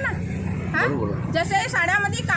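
A woman speaking, with short phrases broken by a pause, over a steady low rumble.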